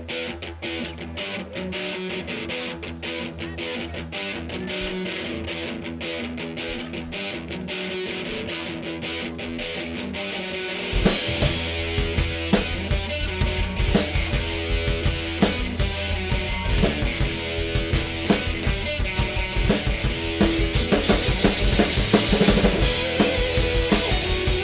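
Live rock band playing an instrumental intro: guitar over light, regular drum ticks, then about eleven seconds in the full band comes in with bass and drum kit and it gets louder.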